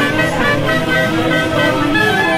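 A large Peruvian orquesta típica, led by a massed section of saxophones with violins, playing a tunantada in held, sustained chords.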